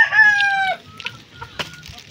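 Rooster crowing: one loud held call that falls slightly in pitch and breaks off under a second in, leaving quieter background sounds.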